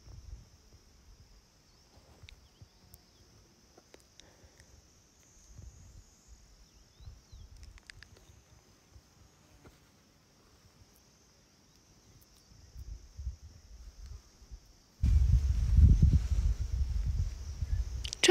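Quiet outdoor ambience with a faint, steady high-pitched insect hum. About fifteen seconds in, wind starts buffeting the microphone with a loud, low rumble.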